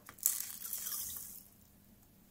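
Rock salt poured from a small plastic weighing boat into a glass beaker of water: a sudden hiss of grains splashing into the water starts just after the beginning and fades out within about a second and a half.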